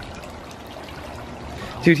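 Water trickling and pouring steadily.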